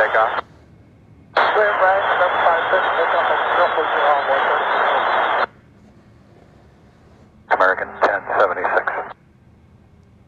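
Air traffic control radio chatter: one voice transmission runs from about a second in to about five and a half seconds, then a second, shorter one comes near the end, with low hiss between them.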